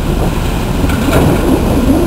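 Waves breaking on a sandy beach, a steady, deep noise with wind on the camera microphone.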